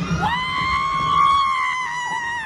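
A rider on a roller coaster giving one long, high scream that swoops up at the start and then holds steady.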